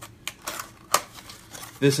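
A few sharp clicks and crinkles of a Funko Pocket Pop keychain's small cardboard package being handled and pried open.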